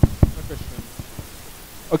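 Footsteps on a hard floor, a few sharp clicks about two or three a second fading as the walker moves away, over a steady hiss of room noise.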